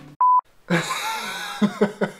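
A short, steady, high beep, like a censor bleep dubbed over a word, then a man laughing.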